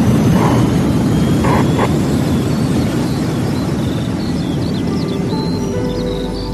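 Low, rumbling rocket-launch roar used as a sound effect after the "Поехали!" call, slowly fading. Near the end it gives way to soft music with bird chirps.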